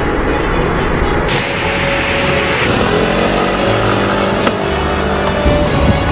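A car driving up under background music: a rush of engine and road noise, then an engine note that rises for a couple of seconds.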